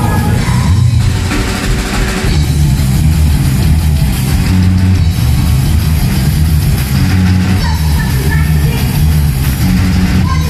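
A punk rock band plays loud and live on electric guitar, bass guitar and drum kit, with a woman singing in places.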